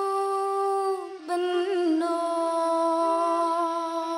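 A woman singing long held notes of a slow song, with a short break a little over a second in before the next held note.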